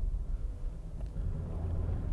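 Steady low rumble inside the cabin of a 2021 Toyota 4Runner driving on a snow-covered road: its 4.0-litre V6 and tyres running on packed snow.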